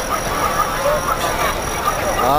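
Crowd babble, with many pedestrians talking at once over steady city traffic noise.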